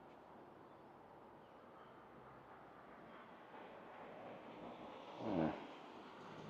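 Quiet outdoor background hiss with no clear event, and a brief low voiced murmur, like a man's hum, about five seconds in.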